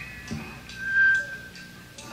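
Electric guitar feedback: a single high, whistling tone that swells about a second in and then fades. Faint, evenly spaced ticks and low band sound run underneath as a rock band holds before the first verse.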